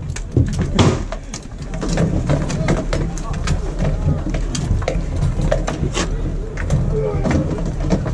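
Din of a mock melee: many voices shouting at once, with frequent sharp knocks of weapons striking shields and wood.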